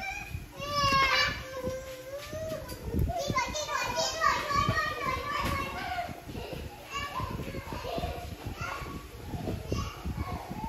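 Children's voices, high-pitched calls and chatter without clear words, running throughout.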